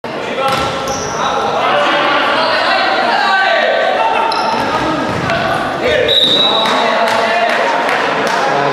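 Indoor futsal play on a wooden sports-hall floor: the ball thudding from kicks and bounces, short high squeaks of shoes on the boards, and players shouting, all echoing in the hall.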